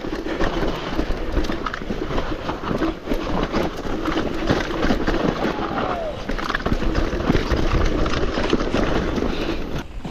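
Mountain bike rattling and clattering down a steep, rough, muddy descent: a continuous jumble of knocks from the chain, suspension and tyres hitting roots and rocks.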